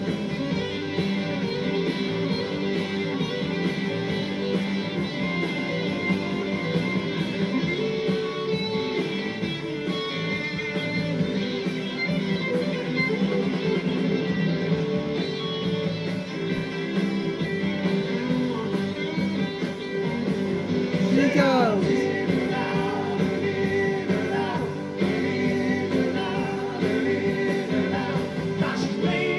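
Live rock band playing, with electric guitar, drums and singing, heard through a television's speaker. A sliding note cuts through the music a little after the middle.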